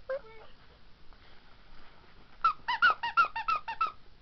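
A quick run of about nine short high-pitched squeaks, about six a second, starting a little past halfway.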